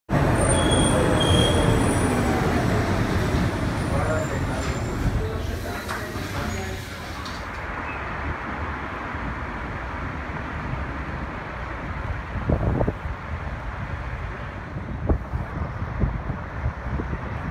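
Metro train running along the track, a motor whine falling in pitch as it slows, with brief high brake squeals near the start. About seven seconds in the sound cuts to open-air city noise: traffic rumble and wind.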